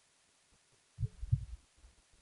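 A short cluster of soft, low thumps in the second half.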